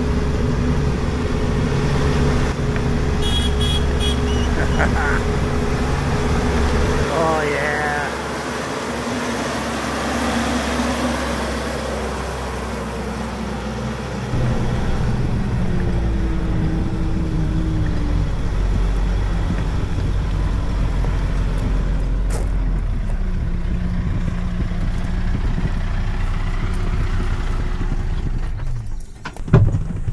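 Kioti RX7320 tractor's diesel engine running steadily as the tractor is driven, a continuous low hum whose level and tone shift a couple of times, about 7 and 14 seconds in.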